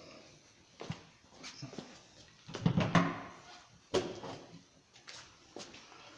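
Quiet knocks and clatter of hand-held power tools being set down and picked up on a table, with a couple of brief pitched voice-like sounds near the middle.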